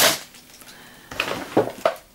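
A short breathy hiss at the start, then a few light clicks and rustles of plastic cosmetic containers being handled as products are picked out of a bag, from about a second in.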